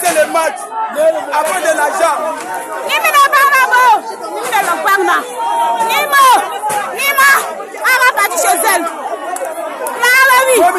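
A crowd of people shouting and talking over one another, with several loud, high-pitched voices overlapping throughout.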